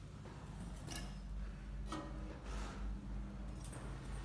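A few light, irregular clicks about a second apart over a low, steady hum.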